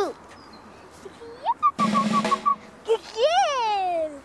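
Short comic musical sound effects: a brief drum roll with a fluttering note about halfway in, then a whistle-like note that slides up and back down near the end.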